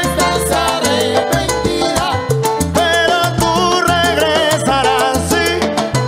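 Salsa band playing with a steady beat: percussion and a moving bass line under melodic parts.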